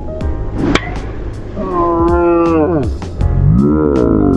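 A driver strikes a golf ball off the tee, one sharp crack under a second in. A man follows with two long, drawn-out 'ohh' calls, the first falling in pitch, over background music.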